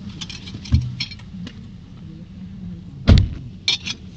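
A car's passenger door is slammed shut about three seconds in, after the rustling and small clicks of someone climbing out of the seat; two sharp clicks follow. A steady low engine hum runs underneath, the car idling.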